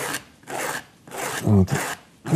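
Abrasive sanding sponge rubbed back and forth over the corner of a frame clip, rounding the corner off and taking away its burrs. It makes a dry rasping in several strokes, each about half a second long.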